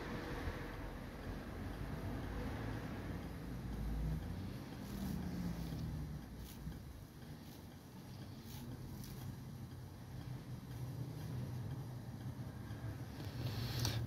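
Faint, steady low rumble of background noise, with a few soft clicks near the middle.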